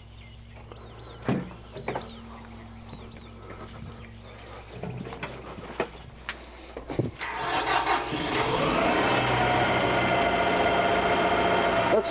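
A few scattered clunks, then about seven seconds in a Kubota M100GX tractor's four-cylinder diesel engine starts, rising briefly in pitch before settling into a steady idle.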